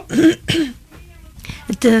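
Speech: a voice on a radio broadcast, with a few short words, a brief quieter pause, and more words near the end.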